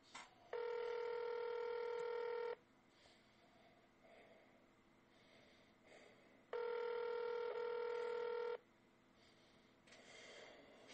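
Telephone ringback tone heard over the phone line: two steady two-second rings four seconds apart, signalling that the transferred call is ringing at the other end and has not yet been answered. Faint line hiss between the rings.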